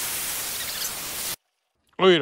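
Steam hissing steadily from a valve opened on the steam line of a home-built Tesla turbine plant, venting to bring the steam pressure down. The hiss cuts off abruptly a little past halfway.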